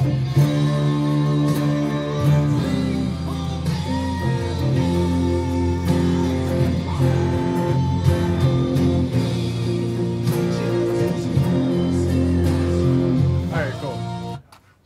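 Electric guitar playing through a song's chord progression. The chords ring on and change every few seconds.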